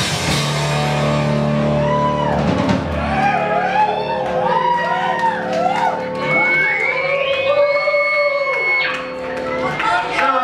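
A live rock band (drum kit, bass and electric guitar) finishes a song about three seconds in, and the club audience cheers and whoops. A long steady high tone sounds in the second half.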